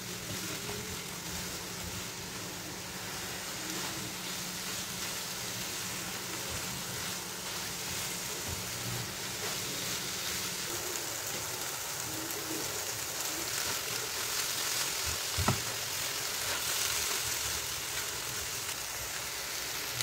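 Scrambled eggs and tomato sizzling in butter in a non-stick frying pan, stirred and scraped with a silicone spatula. A single sharp knock about three-quarters of the way through.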